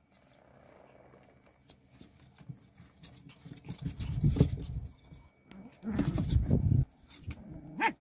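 Morkie (Maltese–Yorkshire terrier mix) puppies play-fighting, growling in two louder spells about four and six seconds in, with light clicks and scuffles between.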